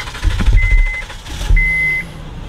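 Car's warning chime beeping about once a second, each beep a short steady high tone, with two low thuds underneath.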